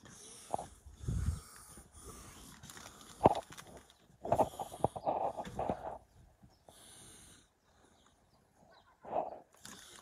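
Firewood logs being shifted on plastic sheeting in a car's back seat: scattered knocks and rustles, with a sharp knock about three seconds in. Strained breathing from the effort of lifting comes about halfway through.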